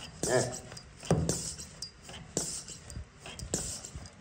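PCP high-pressure hand pump being stroked against a test plug, a knock with a short hiss of air about every second and a quarter while the gauge pressure builds.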